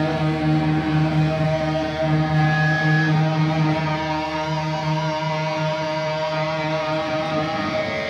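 Heavy metal band playing live, with distorted electric guitars and bass holding long, ringing chords and little drumming heard.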